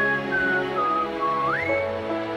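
Slow piano chords with a high whistled melody over them. The melody steps down in pitch, then slides up about an octave around one and a half seconds in.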